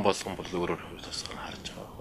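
Only speech: a man talking in Mongolian in short phrases.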